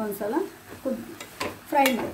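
A woman talking while a steel spoon stirs a stir-fried cabbage dish in a metal pot, with a couple of sharp clinks of the spoon against the pot a little past the middle.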